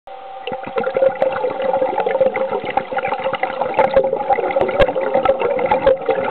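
Heard underwater: a small ROV's electric thruster motors running with a steady two-pitched whine, over bubbling water and frequent crackling clicks.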